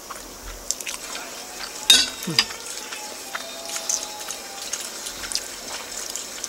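A person eating: chewing with small wet mouth clicks, and a sharper knock about two seconds in.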